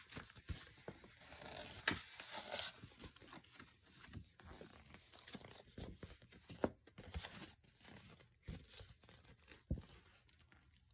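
Paper rustling and crinkling as a large paper wall calendar is handled and turned over, with scattered sharp taps and clicks.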